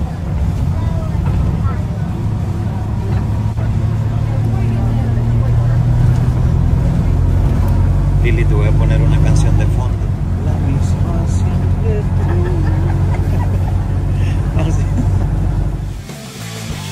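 Engine of an open-sided shuttle vehicle running under way, a steady low drone that swells somewhat in the middle, with wind buffeting the microphone.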